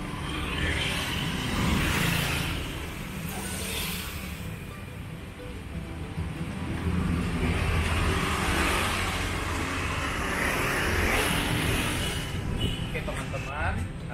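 Street traffic: vehicles driving past, the noise swelling and fading twice over a low engine rumble.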